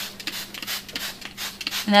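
Plastic trigger spray bottle squirting cleaner onto microfiber upholstery: a run of quick hissing squirts, about three a second.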